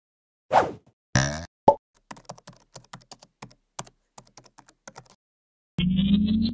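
Animation sound effects: three short pops or whooshes in the first two seconds, then about three seconds of rapid keyboard-typing clicks, roughly seven a second. A short pitched sound rising in pitch starts near the end.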